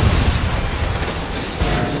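A car exploding: a sudden loud blast right at the start, then a heavy, low rumble that carries on.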